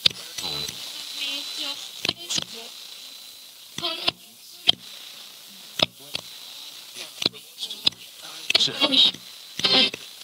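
Paranormal Systems MiniBox Plus AM ghost box sweeping the AM band: steady static hiss broken by sharp clicks every second or so as it jumps between stations, with brief snatches of broadcast voice about four seconds in and again near the end.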